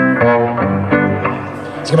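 Electric guitar chords struck and left to ring, fading away, with fresh notes about half a second and a second in.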